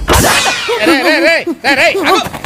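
A whip-like swoosh effect, a fast sweep falling in pitch, marking a cut between clips. It is followed by a loud, wavering pitched sound that rises and falls several times.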